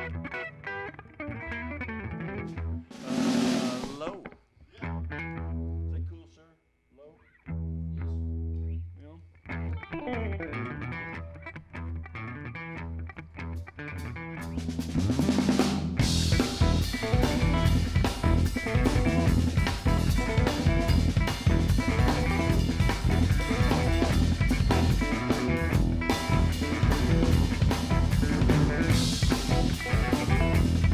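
A live band starts a tune. Sparse held electric bass and guitar notes are broken by gaps and two cymbal swells. About sixteen seconds in, the drum kit comes in and the full band plays louder: drums, electric bass and electric guitar.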